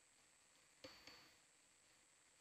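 Near silence with a faint steady hiss, broken about a second in by two quick clicks about a fifth of a second apart, each with a brief high ring.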